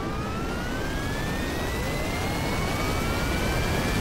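A jet engine spooling up, standing in for a PC with 22 fans switching on. A whine climbs in pitch over a steadily growing rush, and a second whine starts rising about a second and a half in.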